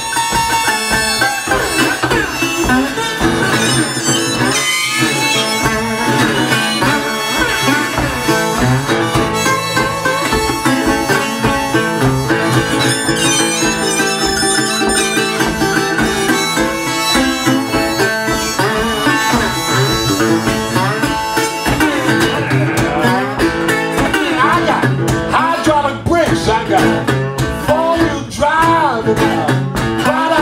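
Instrumental blues break: harmonica wailing with bent notes over a steadily strummed metal-bodied resonator guitar keeping an even driving rhythm.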